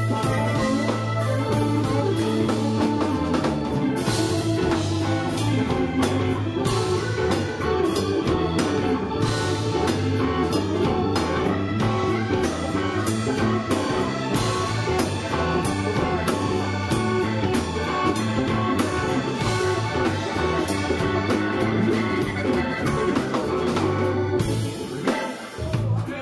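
Live blues-rock band playing an instrumental passage with no vocals: electric guitar, keyboard and a drum kit, at a steady loud level.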